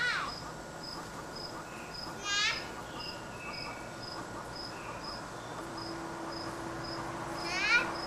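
An insect chirping steadily in the background, a short high chirp about twice a second. Two brief high-pitched squeals break in, a third of the way in and near the end.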